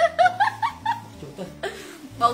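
A woman chuckling, loudest in the first half second and then trailing off into quieter laughter.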